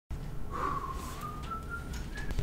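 A person whistling one thin note that starts about half a second in and climbs slowly upward in small steps.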